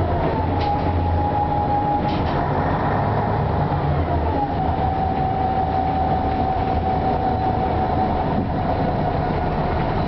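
Ikarus 260 city bus heard from inside while driving: the diesel engine's running rumble under a steady high whine, whose pitch drops a little at the start and again about four seconds in. A few faint clicks come in the first two or three seconds.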